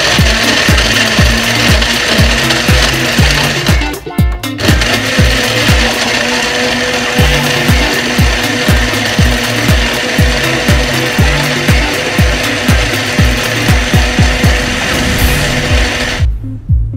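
Electric countertop blender running at full speed, grinding lime wedges, ice and water into a frothy juice. The motor and churning make a loud, steady noise with a brief break about four seconds in, then run on until it cuts off at the end.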